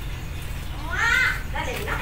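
A child's voice calling out about a second in, rising then falling in pitch, followed by more child vocalising, over a steady low hum.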